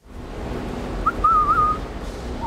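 Outdoor street ambience with a steady low traffic rumble. A person whistles a short wavering note about a second in.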